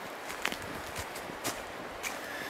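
Footsteps walking through dry leaf litter on a dirt trail, about two steps a second.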